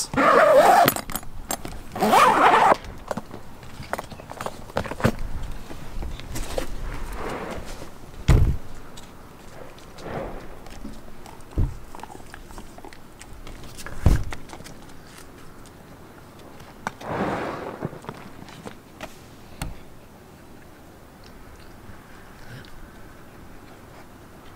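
Zipper of a waterproof soft-pack cooler being pulled shut, two quick rasping pulls in the first three seconds. Then scattered thumps and scrapes as the cooler is handled, turned over and set down on concrete.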